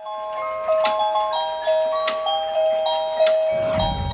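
A bell-like chiming melody of clear single notes, about two notes a second. Near the end a low whoosh rises.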